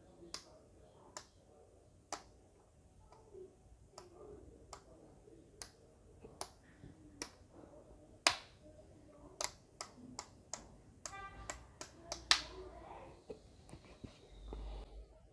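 Rotary function switch of a Uni-T UT61B+ digital multimeter being turned through its positions: an irregular run of sharp detent clicks, two of them louder, a little past eight seconds and about twelve seconds in. About eleven seconds in the meter gives a short beep.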